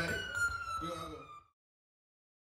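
A sustained high-pitched electronic tone with overtones, under a man's voice, sliding slowly downward in pitch as it fades out. It cuts off abruptly about a second and a half in.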